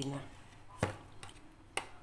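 Two sharp clicks about a second apart from a plastic food container being handled, over quiet room tone.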